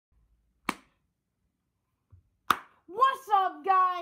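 Two sharp clicks about two seconds apart in a quiet room, then, about three seconds in, a child's voice begins with long, drawn-out notes.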